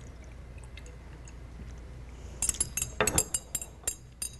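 Glass test tubes handled during a liquid transfer: a faint trickle and light ticks as liquid is poured from one test tube into another. Then, from about two and a half seconds in, a quick run of light glass clinks with a high ringing as the tubes touch each other and the rack.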